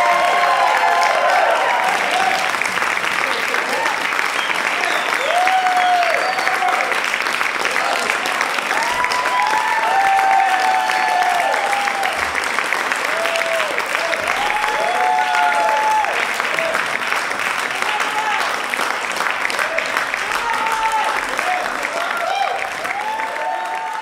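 An audience applauding steadily, with scattered voices calling out and cheering over the clapping.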